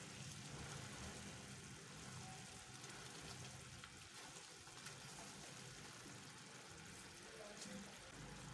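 Sugar and corn-syrup mixture boiling in a non-stick pan, a faint steady bubbling sizzle as the syrup heats toward thickening.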